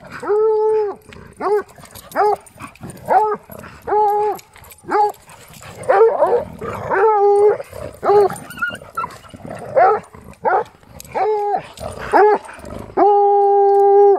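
A dog barking and baying over and over during rough play: about fifteen calls at much the same pitch, most short, some held for half a second. Near the end comes one long bay of about a second.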